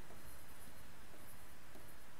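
Faint scratching and tapping of a pen writing on the glass screen of an interactive smart-board display, over steady room hiss.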